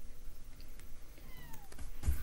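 A house cat meowing once, a short call falling in pitch about a second and a half in.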